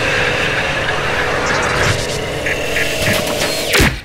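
Electronic logo-animation sound effect: a loud, dense rumbling whoosh with a held tone under it, ending in a fast downward sweep just before the end.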